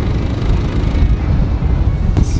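Motorcycle riding noise: heavy wind buffeting on the microphone over the engine and road noise of the moving bike.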